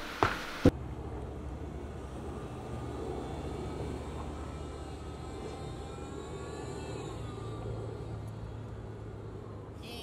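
Outdoor city ambience: a steady low rumble of distant traffic, with two short clicks in the first second.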